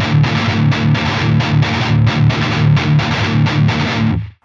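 Distorted electric guitar playing a palm-muted E power chord in a fast, steady black-metal strumming rhythm, the muted strokes repeating evenly and cutting off just after the end.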